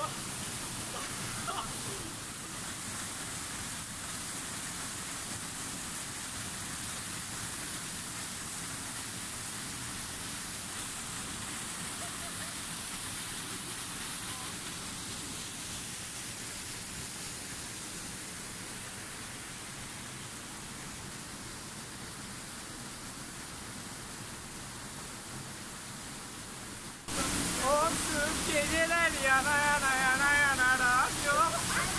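Waterfall pouring into a rushing river, a steady roar of falling and churning water. About 27 seconds in it cuts to louder, closer water with a voice wavering over it.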